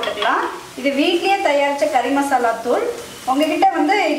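Chopped onions sizzling in oil in a black kadai, stirred and scraped with a wooden spatula, with a woman's voice talking over it.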